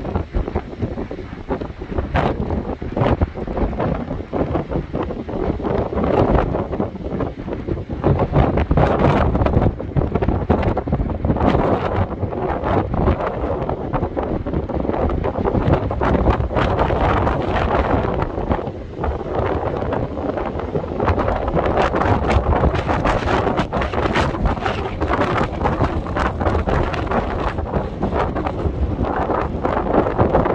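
Strong, gusty storm wind buffeting the microphone, with heavy surf breaking on the shore underneath.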